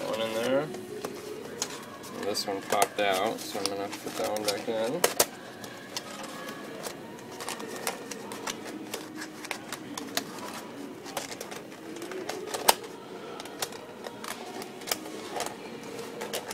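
Thin plastic puzzle-lamp pieces rustling and clicking as they are bent and snapped into each other by hand, with scattered sharp clicks and one loudest click near the end. A voice speaks briefly in the first five seconds.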